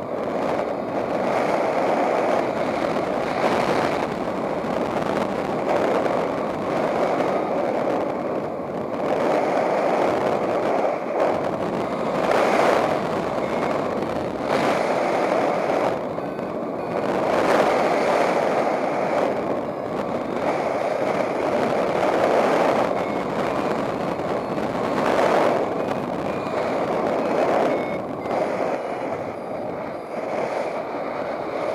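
Airflow rushing over the microphone of a paraglider pilot's camera in flight, swelling and easing every few seconds. Faint short beeps from the flight instrument's variometer come through in the second half.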